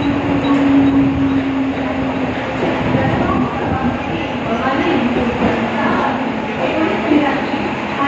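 Mumbai suburban electric local train at a station platform: a steady running rumble with a motor hum that drops slightly in pitch over the first couple of seconds. Voices of people on the platform come through in the second half.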